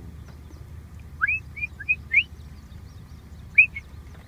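A songbird singing over a steady low hum: a quick run of four short rising whistled notes about a second in, then two more notes near the end.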